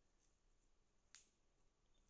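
Near silence, with a single short click about a second in.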